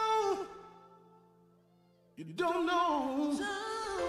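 Recorded gospel song with a solo singer: a held note with vibrato fades out about half a second in, the music drops almost to silence, and singing resumes about two seconds in over a sustained accompaniment.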